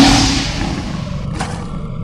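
Logo sting sound effect: a lion-like roar that hits loudly at the start and fades away, with a short sharp hit about a second and a half in.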